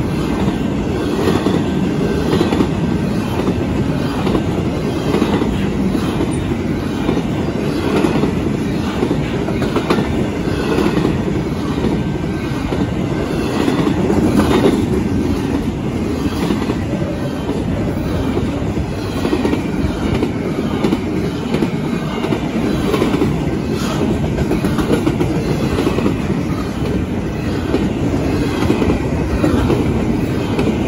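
Fast BNSF double-stack container train passing close by: a loud, steady rumble of steel wheels on rail, with rapid, irregular clicking as the wheels cross rail joints.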